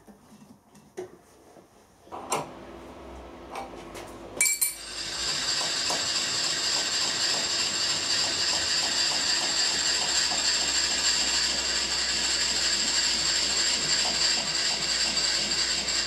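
A few clicks and a knock of hands setting up at a milling machine, then the mill's spindle starts about four and a half seconds in and runs steadily with a high whine, ready to square the ends of aluminium blanks.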